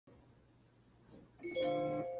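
Near silence, then about one and a half seconds in a chime sounds: several steady pitches struck together and ringing on as they slowly fade.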